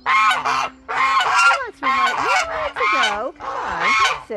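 Domestic geese honking over and over, about seven loud, harsh calls in quick succession, some dipping and rising in pitch.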